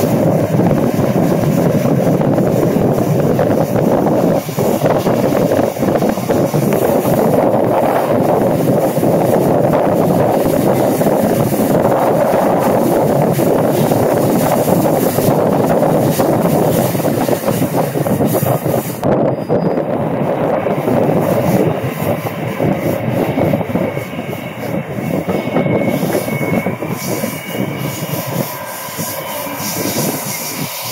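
Passenger train cars running at speed, heard from an open window: a steady loud rush of wheels on rail and air, with fine rapid clicking. Faint high wheel-squeal tones come in during the last third as the train rounds a curve.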